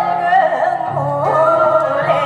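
A woman singing a Korean traditional-style (gugak) song into a microphone, holding long notes with a wavering vibrato, over an instrumental backing whose bass notes shift about a second in.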